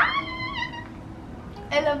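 A young woman's high-pitched squeal of delight, rising quickly and held for just under a second.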